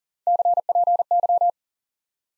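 Morse code sent at 40 wpm as a steady single-pitch tone keyed in three quick letter groups, lasting just over a second: CPY, the ham-radio abbreviation for "copy".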